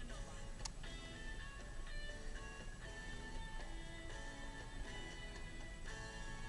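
Music playing from the car radio inside the moving car's cabin, with a steady low rumble of engine and road underneath.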